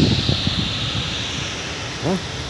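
Wind on the handheld phone's microphone: a steady rushing noise over an uneven low rumble, fading slightly toward the end.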